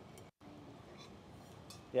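Quiet room tone of a large indoor hall with a few faint small clicks, broken by a brief dropout to total silence near the start. A man's voice says "yeah" right at the end.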